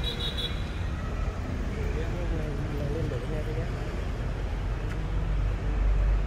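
Faint voices of people talking in the background over a steady low rumble of vehicle noise.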